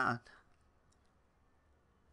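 A short spoken "uh", then near silence broken by a few faint, short clicks about a second in.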